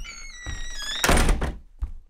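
A few falling high tones, then a loud thump with rustling about a second in, and a softer knock near the end.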